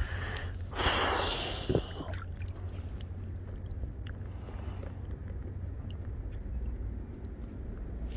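A brief rush of noise about a second in, as the RC boat is lifted out of the water and handled, followed by faint ticks over a low steady rumble of wind on the microphone.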